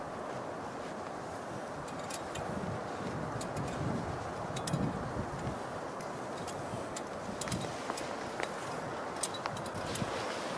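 Steady outdoor rushing noise, with scattered light clicks and scrapes of climbing hardware and boots on rock as a roped climber moves up a rock ridge.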